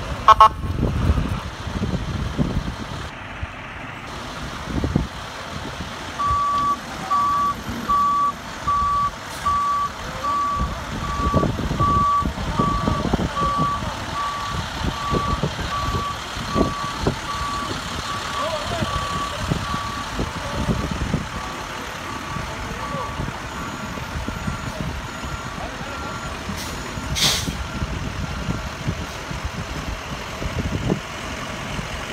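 A truck's reversing alarm beeping at one steady pitch, about one beep a second, from about six seconds in; the beeps grow fainter after the midpoint. A fainter, higher-pitched beeping follows near the end, over a low rumble of vehicles.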